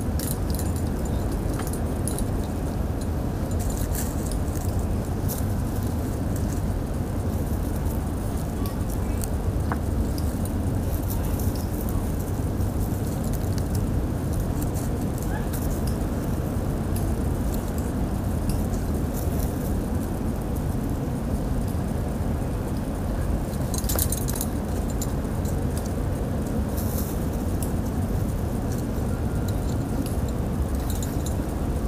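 Climbing hardware (carabiners and belay devices on the harness and ropes) clinking lightly now and then, clearest about four seconds in and again around 24 and 27 seconds, over a steady low rumble.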